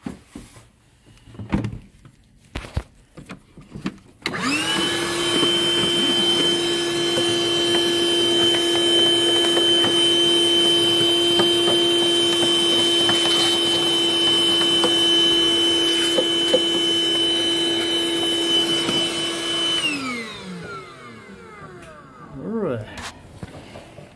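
A vacuum cleaner switches on about four seconds in, quickly spinning up, then runs steadily with a high whine for about sixteen seconds while sucking dirt and leaves from around the car's cabin air filter. It is then switched off, and its pitch falls as it winds down.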